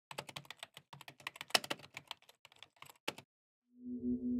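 Typing on a computer keyboard: a run of quick, irregular keystrokes that stops a little after three seconds in. Just before the end, a low held tone of background music comes in.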